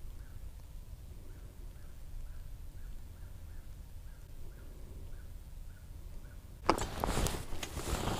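Low rumble with faint high chirps repeating about twice a second. About two-thirds of the way in comes a louder run of clicks and scraping: the fishing rod and reel being picked up and handled.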